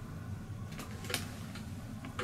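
Quiet room noise with a steady low hum, broken by two faint clicks about a second in from an airbrush being handled before spraying.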